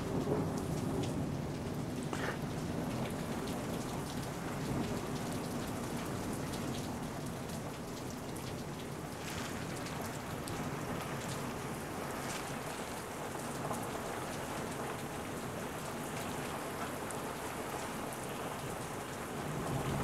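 Heavy thunderstorm rain heard from indoors: a steady downpour with scattered sharper drop ticks, and thunder rumbling beneath it.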